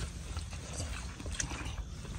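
Faint scattered ticks and rustles of people eating by hand from sal-leaf plates, over a low steady rumble.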